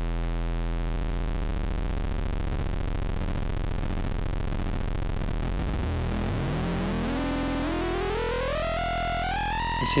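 Software synthesizer square-wave oscillator with its pulse width modulated at audio rate by a second oscillator's sine wave. A steady pitched tone turns into a dense, rough, clashing texture about a second in, and over the last four seconds a rising pitch glides upward and levels off high.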